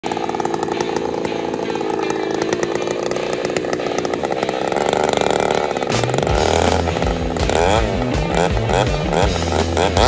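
Two-stroke chainsaw running at full throttle, cutting through a log. About six seconds in, music with a stepped bass line comes in over the saw.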